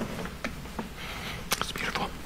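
Hushed whispering and faint rustling of paper music, with a few small sharp clicks.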